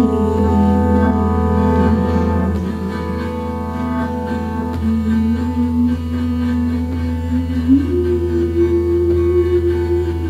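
Slow live jazz ensemble music: sustained keyboard chords over a steady low drone, with a long held melody note that steps up in pitch near the end.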